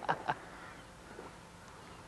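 A man laughing: a few quick bursts of laughter in the first moment, then only faint background sound.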